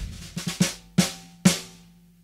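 Single sampled drum hits from a software sampler, played one at a time while different drum sounds are auditioned in search of a snare. Four separate strikes in about a second and a half after a louder hit at the start, each ringing out and fading.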